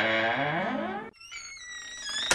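Electronic outro music: a distorted synthesizer tone sliding down and back up in pitch, which cuts off about a second in, leaving fainter high tones that fall in pitch.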